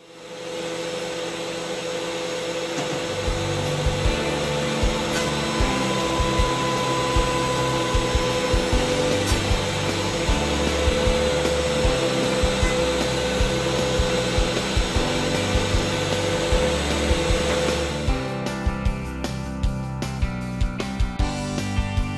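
Benchtop thickness planer running steadily with a high motor whine as cast epoxy-resin planks and maple boards are fed through its cutterhead. Background music with a beat comes in a few seconds in and takes over near the end as the planer noise drops.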